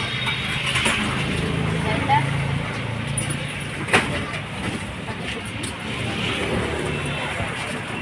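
Busy street-side ambience: background voices over a steady wash of traffic noise, with one sharp click about four seconds in.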